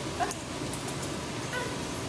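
A dog giving two short whimpers, the first rising in pitch about a quarter second in and the second near the end, with a few light clinks.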